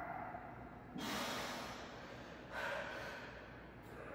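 A man's heavy, effortful breathing while pressing dumbbells on a bench: two loud, rushing breaths, the first about a second in and a longer one about two and a half seconds in.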